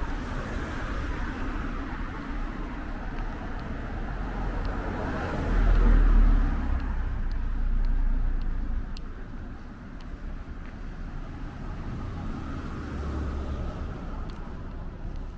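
Car passing on a city street, swelling to its loudest about six seconds in and then fading, over a steady low rumble of wind on the microphone, with scattered light ticks.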